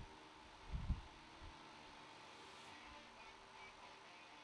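Near silence: faint room tone, with one brief soft low bump about a second in.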